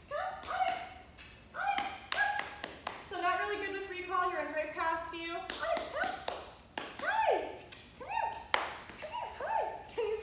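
A woman's high, sing-song voice coaxing a dog, in short calls that rise and fall in pitch, with a longer wavering call in the middle. Sharp taps and clicks come between the calls.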